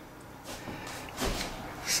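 Faint handling noise, with a short soft knock a little over a second in and another brief rustle near the end.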